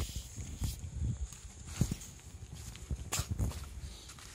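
Footsteps and rustling on black plastic mulch sheeting: irregular low thumps with a few short crinkles about a second apart.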